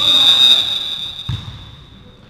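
Volleyball referee's whistle: one long steady blast, loudest in the first half second and then slowly tailing off. A thud comes just over a second in.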